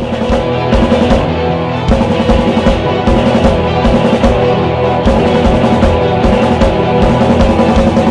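Loud rock music with sustained chords over a driving, regular bass-drum beat.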